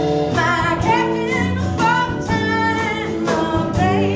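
Live band playing a song: a sung vocal line over acoustic guitar, electric bass and a drum kit keeping a steady beat.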